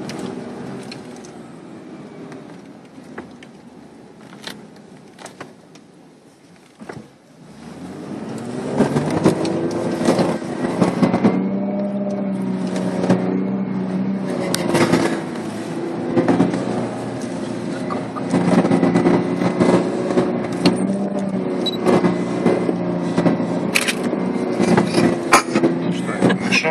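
Inside the cabin of a 4x4 SUV driving over sand dunes: the engine is quieter at first, then about a third of the way in it pulls hard and runs loud and steady under load. Short knocks and rattles come through the whole time as the vehicle bounces over the sand.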